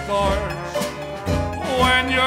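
Traditional jazz band playing an instrumental passage: trumpet, trombone and clarinet weave wavering melodic lines over a steady low tuba bass, with banjo and rhythm section.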